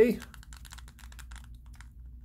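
Rubber buttons of a TCL Roku TV remote being pressed in and out rapidly with the thumbs: a quick run of soft clicks that thins out toward the end.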